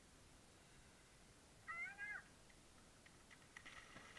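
Running feet splashing into shallow sea water near the end. About halfway through, a brief two-note pitched call from an unseen animal or voice.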